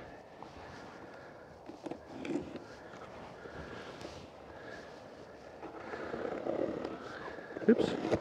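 Knife slitting packing tape along the seam of a cardboard box, with hands scraping and handling the cardboard: quiet scratching and rustling with a few small clicks, louder for a stretch near the end.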